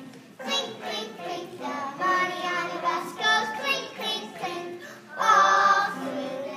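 Group of preschool children singing a song together, with a louder stretch of singing near the end.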